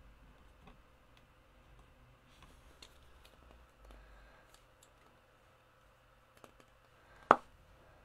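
Faint, scattered clicks and light taps of small craft tools and pieces being handled on a desk, with one sharp, much louder click about seven seconds in.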